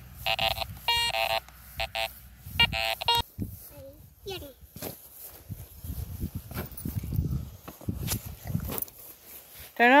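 Garrett Ace 400 metal detector sounding its target tone: four short, steady beeps about a second apart as the coil is swept back and forth over a buried target. Then come low rustling and a few knocks as a shovel digs into the sod.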